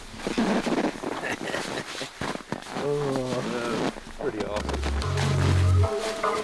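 Fabric rustling as a pair of over-pants is pulled up over boots, with a brief voice about three seconds in. Low bass notes of a music track come in near the end.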